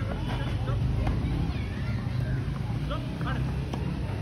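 A few sharp pops of a tennis ball struck by rackets over a steady low rumble, with distant voices in the background.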